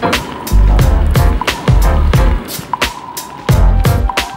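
Background music with a steady, fast beat and heavy bass.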